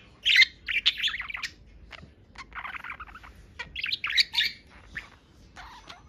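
Pet budgerigars chirping and chattering in three quick warbling bursts, the loudest right at the start.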